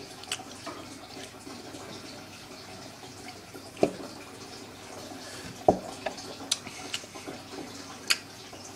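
Mouth sounds of a person tasting a sip of soda: a handful of small lip smacks and clicks spread through, over a faint steady hiss.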